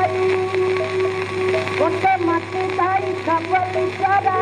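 An old recording of a Bengali song: a steady held drone note with a melody above it that glides and bends between notes. A low steady hum runs underneath.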